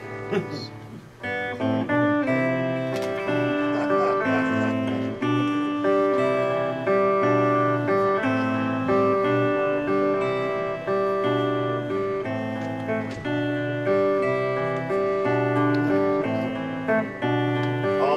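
Electric guitar picking a repeating melody over low bass notes, starting about a second in after a short laugh.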